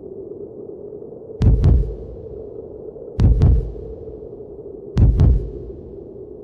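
Heartbeat sound effect: three slow double thumps, each a lub-dub pair, under two seconds apart, over a steady low hum.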